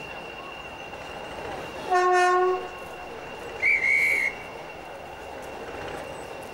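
A small diesel shunting locomotive's horn gives one short blast about two seconds in, over the steady sound of its diesel engine running. About a second and a half later a single higher, shriller whistle note sounds briefly.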